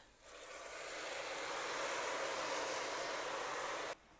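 Water, oil and cumin seed poured over rice in a hot, oiled pot, sizzling and hissing as the liquid reaches the hot base. The hiss builds over the first second, holds steady and stops suddenly near the end.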